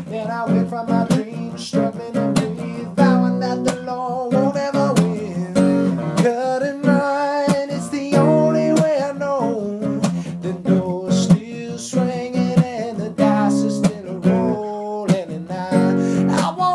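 Acoustic guitar strummed steadily, with a man singing over it.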